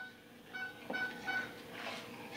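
A metal spoon stirring dry flour mix in a plastic mixing bowl, squeaking against the bowl. There are three short, high squeaks of the same pitch, evenly spaced a little under half a second apart.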